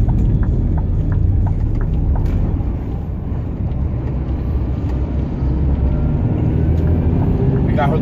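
Heavy truck's diesel engine and road noise heard inside the cab while cruising on the highway: a steady low drone with no gear changes.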